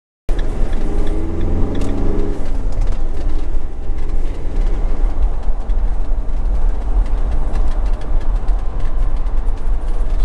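Engine and road noise inside a motorhome's cab while driving: a loud, steady low rumble of tyres and engine. It cuts in abruptly just after a moment of silence, and an engine note stands out over the first couple of seconds.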